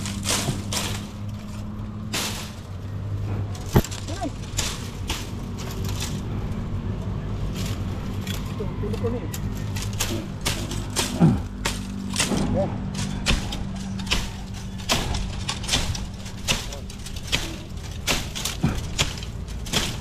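Machete hacking at bamboo stems in a thicket: a long run of sharp, irregular chops and cracks, a few strokes every second, with a steady low hum underneath.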